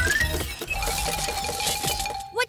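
Cartoon robot-arm mechanism sound effect: a short rising electronic tone, then a steady mechanical buzz with rapid, even ticking, over background music.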